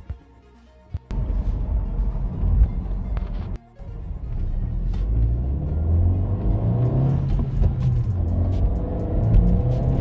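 Turbocharged engine of a 2017 Honda Civic accelerating hard from a near stop, heard from inside the cabin. A low rumble starts suddenly about a second in and rises in pitch as the car gathers speed. The car still pulls with some kick at about 660,000 miles.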